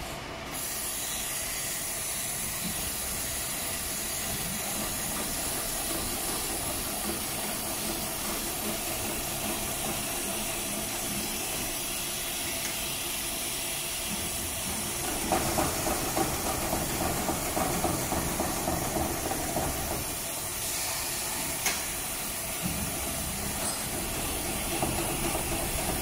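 HighTex 733-30 long-arm extra heavy duty lockstitch sewing machine, with its large oscillating shuttle hook and alternating presser foot, stitching through a thick stack of fabric layers over a steady hiss. The stitching gets louder for about five seconds past the middle, and again near the end.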